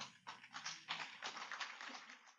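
Congregation applauding: many overlapping hand claps, quite faint.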